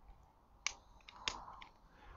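Two sharp clicks from a hand-held lighter being worked to light candles, about two-thirds of a second apart, followed by a few fainter ticks.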